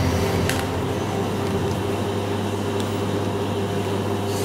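A steady low hum, with one faint click about half a second in.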